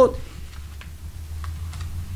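Quiet room tone on an open microphone: a low, steady hum with a few faint, soft clicks, just after a spoken word ends.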